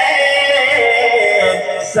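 A man singing a naat through a microphone and loudspeakers, drawing out a long note that steps in pitch and drops briefly near the end before the next line.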